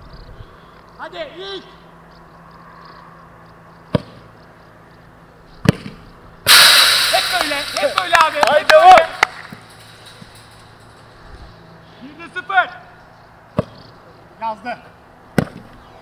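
Sharp thuds of a football being kicked: one about four seconds in, another shortly after, and two more near the end. In between comes a loud stretch of men's shouting lasting a few seconds.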